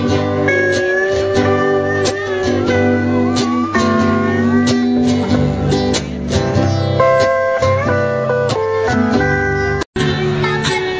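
Hawaiian steel guitar playing a sliding, gliding melody over strummed chords and a bass line. The music drops out for an instant near the end.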